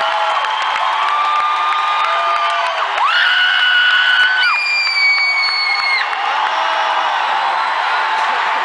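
Large concert crowd cheering and shouting, with long shrill whistles about halfway through, one held note followed straight away by a higher one.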